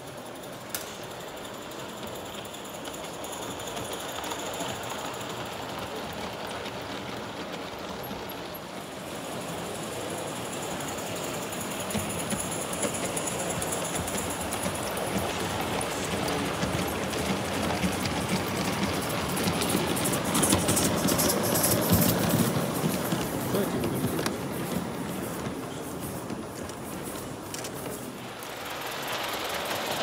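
Live-steam garden-scale model train running on the track, a rapid mechanical rattle of exhaust and wheels that grows louder as it passes close, loudest about two-thirds of the way through, then fades.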